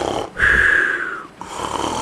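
Cartoon-style snoring, played for a character that has just been put to sleep: a rasping snore on the in-breath, then a whistle falling slightly in pitch on the out-breath, heard twice.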